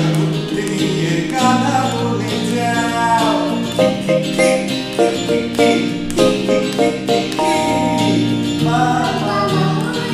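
A child singing a Bengali rhyme song over a plucked-string accompaniment. From about four to seven and a half seconds in, the accompaniment plays a run of short, separate notes.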